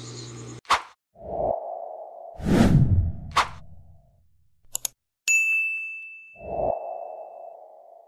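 Subscribe-button animation sound effects: a few whooshes, a sharp click and a double mouse click, then a notification-bell ding that rings out for about two seconds, followed by another whoosh.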